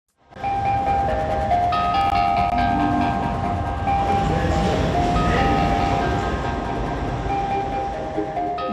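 Steady rumble of a train at an underground railway station, with long held high tones over it that shift in pitch every second or two.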